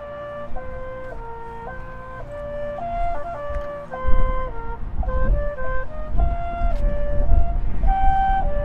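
Marching band playing a melody of held notes moving step by step, led by wind instruments. From about halfway, a heavy irregular low rumble of wind buffeting the microphone sits under the music.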